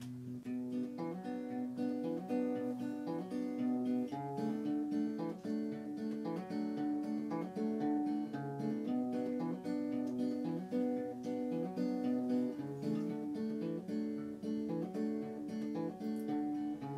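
Solo acoustic guitar playing a steady, repeating picked pattern of single notes: the instrumental intro of a song before the vocal comes in.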